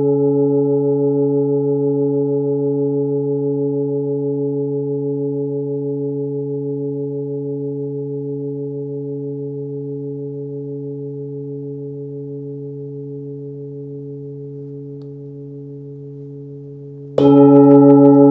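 A 26.7 cm hand-forged singing bowl with its fundamental near 137 Hz (C#) rings and fades slowly over about seventeen seconds, its tone wobbling in a slow, even pulse. Near the end it is struck again with a padded mallet and rings back up at full strength.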